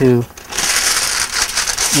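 Aluminium foil crinkling as a sheet is handled and spread out, lasting a little over a second.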